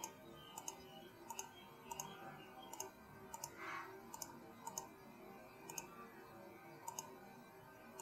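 Computer mouse clicking, a dozen or so faint single clicks at uneven intervals, as drum channels in a recording program are set one by one to send to the mixer.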